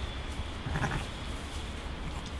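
A sheep bleats once, briefly, about three-quarters of a second in.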